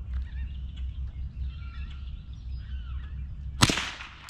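A single rifle shot, sharp and loud, about three and a half seconds in, fired to finish off a wounded nutria that is still twitching. A low steady rumble runs underneath.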